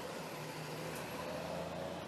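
Xiaomi M365 electric kick scooter under way: a steady hub-motor hum with a faint, slowly rising whine over rolling noise from the tyres.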